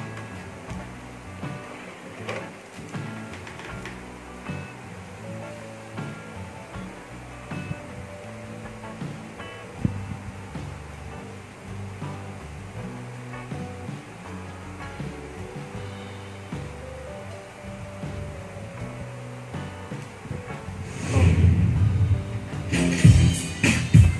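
Background music from a Megapro Plus karaoke player's start screen, with a steady stepping bass line, while the disc loads. About 21 seconds in, louder music starts as the disc's intro begins to play.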